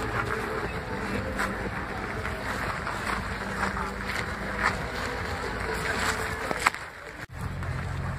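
Outdoor crowd ambience with wind buffeting the microphone, faint voices and a few sharp clicks. After an abrupt cut near the end, a car engine hums low and steadily.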